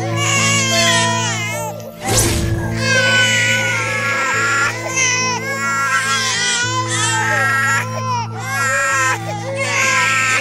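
Infants crying, their wavering wails laid over a steady, low dramatic music drone. A short whoosh cuts through about two seconds in.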